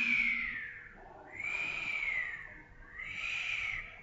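Spectral Doppler ultrasound audio of venous blood flow: three whooshing swells, each rising and falling in pitch. The flow waxes and wanes with breathing (respiratory phasicity), the sign that there is no complete obstruction between the vein and the heart.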